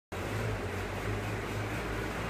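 Vehicle engines running at low speed in the street: a steady low hum.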